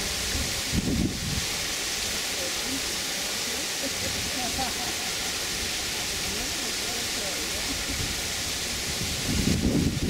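A steady outdoor hiss, with brief low voices about a second in and again near the end.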